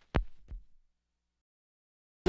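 Two low thumps about a third of a second apart, the second softer, then dead silence.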